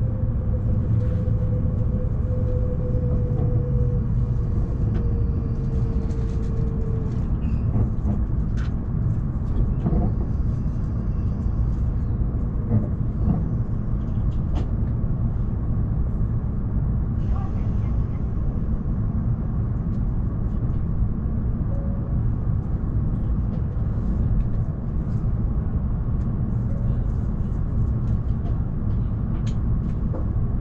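Cabin sound of an E7-series Shinkansen car drawing to a stop at a platform and then standing: a steady low rumble and hum, with a faint whine falling slowly in pitch over the first several seconds, and a few light clicks.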